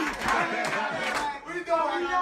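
Background music: a gwijo-style group chant sung by many voices together, turning into held, sliding sung notes about halfway through.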